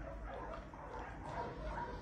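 A dog eating dry kibble from a bowl: faint, steady crunching and chewing.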